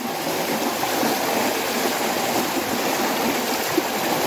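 Floodwater channelled between fences down a narrow walkway, running fast in a steady, loud rush.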